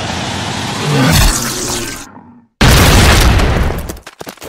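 Two heavy explosions from explosive shells. The first is already rumbling at the start and dies away over about two seconds. After a short silence, a second blast hits suddenly about two and a half seconds in and fades by the end.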